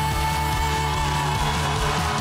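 Live pop-ballad performance by a band with singers, drums and keyboard: a long held high note over a steady bass line.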